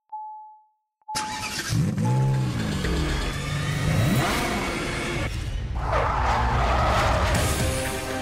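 Car sound effects in an animated outro: a dashboard warning chime beeps three times, then an engine starts and revs, with music coming in near the end.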